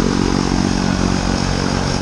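Propeller airplane's engine running steadily on the ground close by, a loud, even drone.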